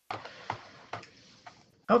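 After digital silence, the audio track comes back with faint background noise and three short clicks about half a second apart. A man's voice starts near the end.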